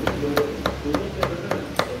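Meat cleaver chopping cooked pork on a thick round wooden chopping block: a quick, regular series of sharp chops, about seven in two seconds.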